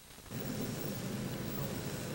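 Faint steady background noise, mostly low in pitch, that steps up about a third of a second in and then holds evenly.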